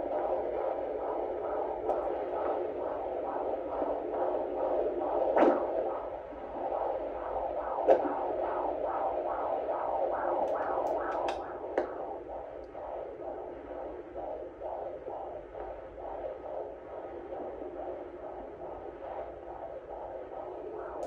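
Handheld fetal Doppler picking up an unborn baby's heartbeat through its speaker: a fast, even whooshing pulse of about two and a half beats a second, a good heart rate of 144. It is louder over the first few seconds and fainter after, with a couple of brief knocks along the way.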